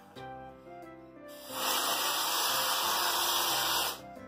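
Aerosol can of whipped cream spraying: a loud, steady hiss that starts a little over a second in and cuts off just before the end, with background music underneath.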